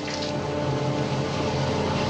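A steady low drone of several held pitches over a light hiss, an unbroken background on an old film soundtrack.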